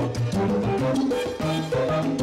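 Live salsa band playing: a stepping bass line, keyboard chords and percussion over a steady dance beat.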